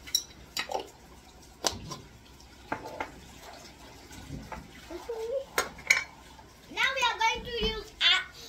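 A metal spoon and containers clinking and knocking against a stainless-steel cooking pot: about eight separate short strikes as spices are added and stirred in.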